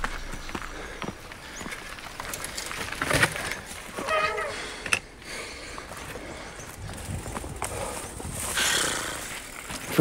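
Mountain bike rattling and clattering over a rocky trail, then being pushed uphill on foot, with the rider breathing hard from the effort and giving a short grunt about four seconds in.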